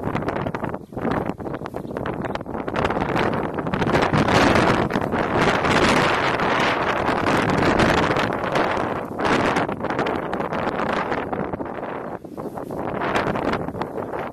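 Wind buffeting the camera's microphone: a rough rushing noise that builds to its strongest in the middle and eases near the end.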